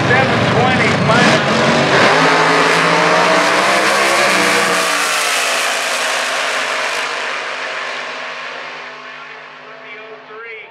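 Supercharged V8 nostalgia dragster and a second race car launching off the line and running down a drag strip: loud engine noise surging from about two seconds in, its pitch gliding, then fading away as the cars go off into the distance.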